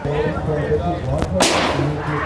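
A ball thrown at a break-a-bottle carnival game hits the target with one sharp crash about a second and a half in, and the bright ring of it dies away over about half a second. Fairground voices run underneath.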